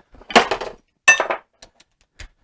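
Steel bolts or cap screws clinking together as they are handled, in two short rattles; the second has a bright metallic ring.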